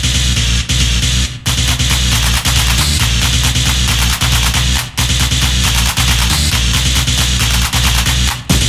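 Old-school techno playing loud with a fast, driving beat, briefly cutting out about a second and a half in and again near five seconds.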